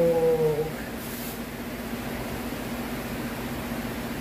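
A short drawn-out voiced sound, falling slightly in pitch, in the first second, over a steady low hum.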